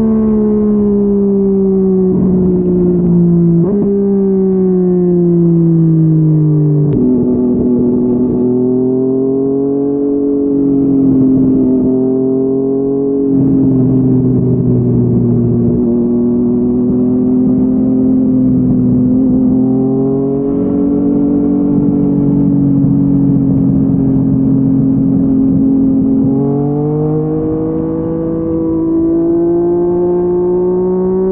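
Yamaha MT-09 three-cylinder engine through a Yoshimura R55 slip-on exhaust, heard from the rider's seat. The engine note falls as the bike slows, with the revs jumping up twice as it is shifted down in the first seven seconds. It then holds a steady cruise with small throttle changes and rises again near the end as the bike accelerates.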